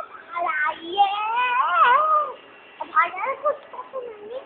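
A child's high-pitched voice in a singsong, sliding call that rises and falls for about a second, then a few short vocal sounds near the end.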